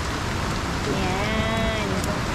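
Heavy rain falling steadily, a dense even hiss of rain on the ground and roof. A voice is briefly heard in the second half.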